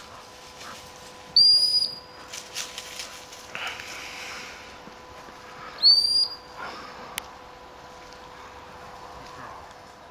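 A gundog whistle is blown twice, each a short, high-pitched blast of about half a second, the two some four and a half seconds apart, as commands to a Labrador retriever working cover. Quieter rustling is heard between the blasts.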